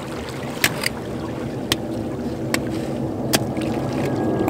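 About five sharp clicks, spaced irregularly, of a snail shell being knocked and broken against rock, over steady water lapping at the jetty rocks.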